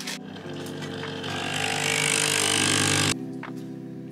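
Coffee machine pumping coffee into a metal travel mug: a steady pump hum under a hiss that grows louder, cutting off suddenly about three seconds in. Background music plays throughout.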